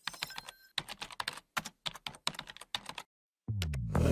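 Computer keyboard typing: a quick, irregular run of key clicks, then a short pause and music starting near the end.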